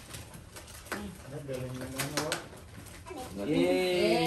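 Soft, low-pitched voices with curving pitch, and short clicks and crinkles of gift wrap being handled.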